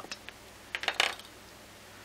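A plastic highlighter pen set down on a desk: a short clatter of small hard clicks about a second in.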